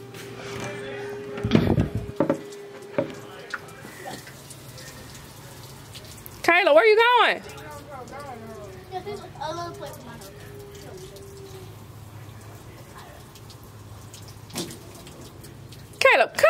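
Children playing outside with a garden hose: water running under faint children's voices, with a thump about one and a half seconds in and one loud, wavering child's shout about six and a half seconds in.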